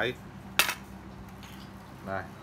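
A brief metallic clink about half a second in, from the loose metal line guides bunched at the tip of a telescopic fishing rod knocking together as it is handled, over a steady low hum.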